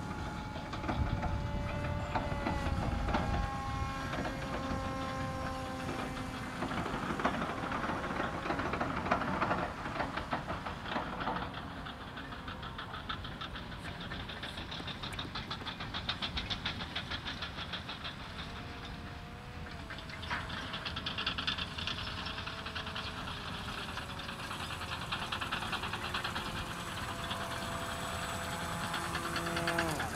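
Electric motor and propeller of a radio-controlled autogyro flying overhead: a buzzing whine whose pitch slowly drifts up and down as the throttle changes.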